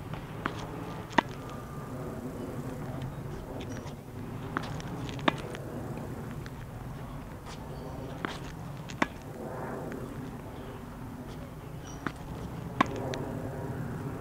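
Tennis ball dropped onto a hard court and struck with a racket four times, about every four seconds: each time a soft bounce, then a sharper pop of the ball off the strings a moment later.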